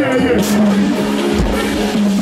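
Live concert music played loud through a PA system: a long, steady held note over the backing, a short bright crash about half a second in, and heavy bass coming in partway through.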